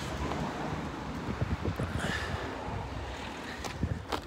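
Wind buffeting the microphone, uneven low rumbling gusts over a steady hiss.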